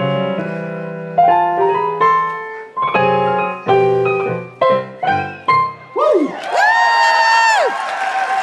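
Digital piano played four hands by two players: a run of struck chords, each dying away, closing with a few quick final chords about six seconds in. A voice then rings out in one long held whoop that rises, holds and drops off.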